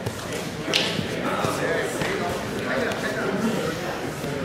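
Indistinct voices of onlookers and coaches calling out in a large, echoing hall, with a brief sharp hiss a little under a second in.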